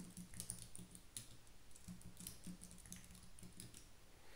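Faint keystrokes on a computer keyboard: a few scattered key clicks as a new password is pasted in, confirmed and entered at a terminal prompt.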